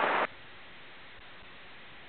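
Airband VHF radio receiver: the tail of a transmission cuts off abruptly about a quarter second in, leaving a faint, steady radio hiss with no one on the frequency.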